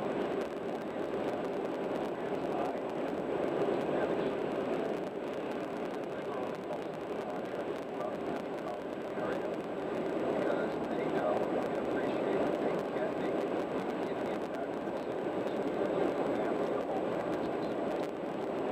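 Steady road noise inside a car cruising on a freeway: tyre and engine noise heard through the cabin.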